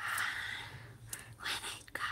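A woman's breathy, unvoiced sounds close to the microphone: two airy exhales, one in the first second and one about halfway through, with a few small clicks between.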